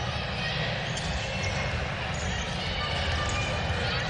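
Live basketball court sound: a ball dribbled on a hardwood floor amid the general noise of players moving and calling on court.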